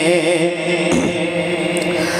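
A man singing a naat into a handheld microphone, holding one long note whose pitch wavers slowly up and down.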